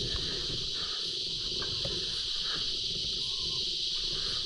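A steady, high-pitched insect chorus droning without a break.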